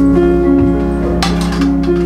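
Instrumental music with a guitar-like sound, playing held notes that change every half second or so, with a short burst of noise a little over a second in.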